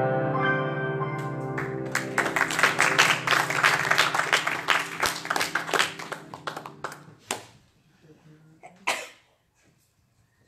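A grand piano's final chord rings and fades, then a small congregation applauds for about five seconds, the clapping thinning out to a couple of last claps.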